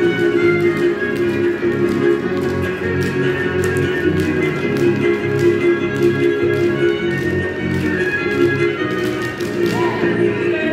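Traditional string-band dance music, with fiddle and guitar playing a pulsing, rhythmic tune. Sharp taps from the dancers' steps on the concrete floor sound through it.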